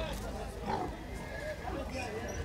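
Background murmur of men's voices among livestock pens, with faint calls of pigs mixed in.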